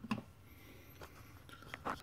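A few short, light clicks and knocks as a steel reamer and its parts are handled on a wooden workbench, spread through the two seconds.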